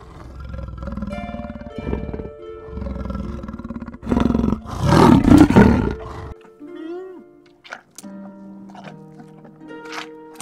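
A large animal growling and roaring in rough, low calls with short pauses, loudest about five seconds in, over soft background music. The calls stop about six seconds in, leaving the music with a brief gliding animal call.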